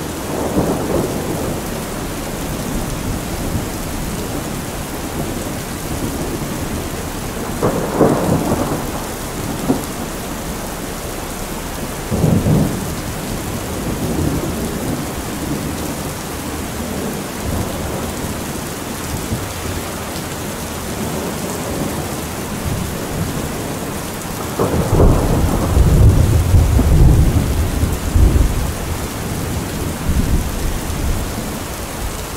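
Heavy rain falling steadily, with thunder: short cracks about a second in, at about eight seconds and at about twelve seconds, then a long, deep rumble near the end that is the loudest sound.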